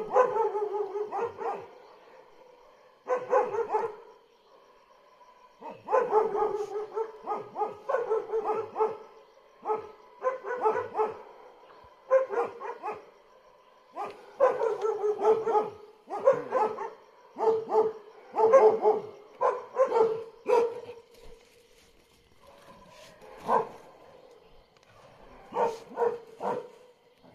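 Dog barking in about ten bouts of quick barks, with short quiet gaps between bouts.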